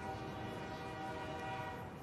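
A held, steady chord of several sustained tones, a soundtrack drone under a chapter title, beginning to fade near the end.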